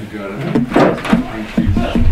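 People talking in a room, voices not picked up clearly as words, with a low rumble of movement near the end.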